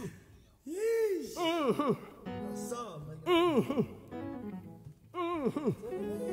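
A male gospel voice sings four short wordless swoops, each rising and falling in pitch, with softer sustained backing notes between them.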